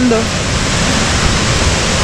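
Waterfall close ahead: the steady, even rush of falling water.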